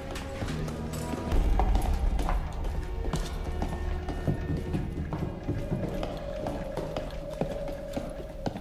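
Several men's booted footsteps on a concrete floor, walking in an uneven stream of steps, over a low sustained music score. A deep rumble swells about a second and a half in.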